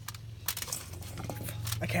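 Aluminium foil lining a pot crinkling, with a few light clicks, as raw potato cubes and onion rings are pushed into place by hand. A steady low hum runs underneath.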